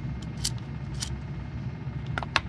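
Two light metallic clicks, about half a second and a second in, as a small SMA open-calibration terminal is threaded onto port 1 of a NanoVNA, over a steady low hum.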